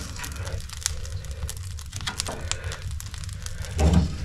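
Wood fire crackling and popping in a wood-burning sauna stove's firebox as logs are pushed in, over a steady low rumble. Just before the end the metal firebox door swings shut with a louder clunk.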